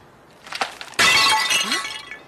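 A sudden loud crash of something breaking, with a bright ringing like glass shattering, about a second in and dying away within a second.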